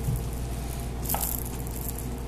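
A RagaMuffin kitten's fur and face rubbing against the camera microphone: soft rustling, with a brief scrape about a second in, over a steady low hum.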